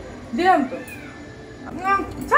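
A cat meowing twice in short rising-and-falling calls, one about half a second in and another starting near the end.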